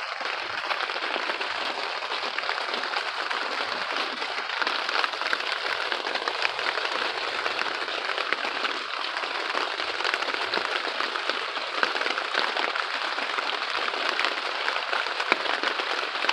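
Steady rain pattering on a greenhouse's plastic cover, heard from inside as a dense patter of many small drops.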